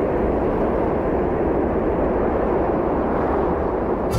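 A steady rumbling whoosh sound effect, like wind or a passing jet, with no tune in it; it cuts off abruptly at the end.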